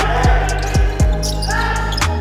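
A basketball being dribbled on a hardwood court: a few sharp bounces in the first second, with music underneath.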